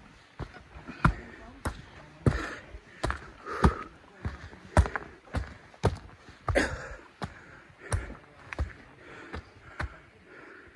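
Footsteps of a hiker climbing a steep forest trail, a thud about every half-second, with breathing heard between the steps.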